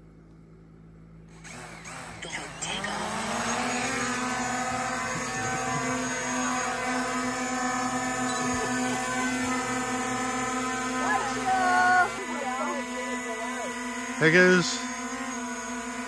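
Quadcopter drone's propellers spinning up for takeoff: the hum rises in pitch over a couple of seconds, then settles into a steady hover drone.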